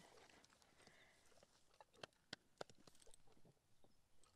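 Near silence with a few faint, scattered taps and clicks in the middle: a saddled horse and the people beside it shifting their feet on a gravel track.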